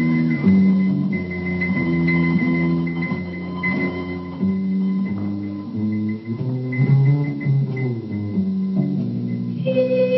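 Music for a stage dance number, led by bass guitar and guitar, with a melody moving in distinct stepped notes.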